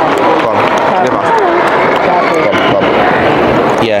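Babble of many spectators talking at once in a football stadium stand, a steady mass of overlapping voices with no single clear speaker.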